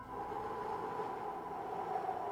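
Soft ambient background music: a quiet held chord of a few sustained tones, with no beat.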